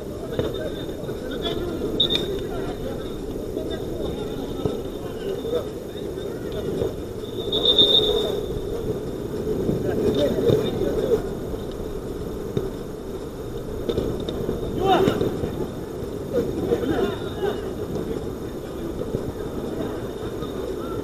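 Distant shouts and calls of players during a small-sided football match, over a steady low background rumble, with a short high whistle-like tone about eight seconds in.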